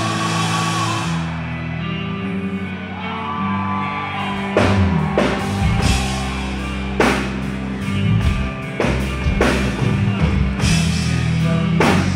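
Hard rock band playing live through a festival PA, with sustained guitar and bass notes. Drum and cymbal hits crash in about four and a half seconds in and keep landing every second or so.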